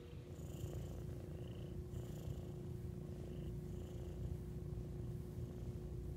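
Black kitten purring continuously while it is stroked on a lap: a low, steady rumble.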